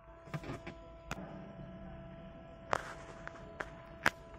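A handful of light taps and clicks from fingertips on a car's aftermarket touchscreen head unit, the loudest about three quarters of the way through. Under them runs a faint steady sound of several held tones.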